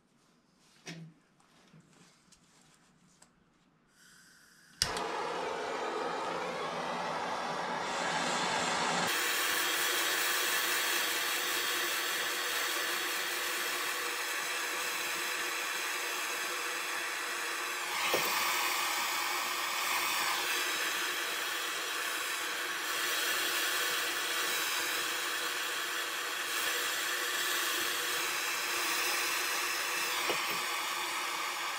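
Handheld gas torch being lit: a short hiss of gas, a sharp click as it catches about five seconds in, then the flame running with a steady rush that grows fuller a few seconds later, heating a copper pipe joint for soldering.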